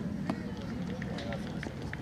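Faint distant voices over a steady low outdoor background hum, with a sharp tap about a third of a second in and a few short high chirps.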